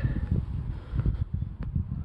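Wind buffeting the microphone as an uneven low rumble, with a sharp click near the end.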